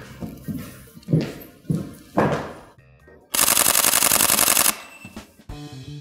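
Sony a6000's shutter firing a rapid continuous burst of evenly spaced clicks, lasting about a second and a half from about three seconds in. It shows the camera's very fast frame rate.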